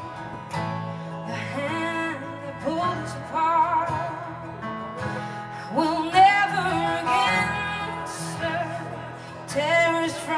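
Live acoustic band music: acoustic guitar and keyboard holding a slow chord under a wavering melody line, in a stretch between sung verses.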